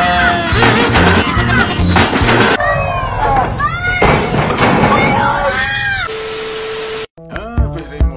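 A person screaming in fright over loud added music and sound effects; near the end, a steady tone with hiss lasts about a second and then cuts off suddenly.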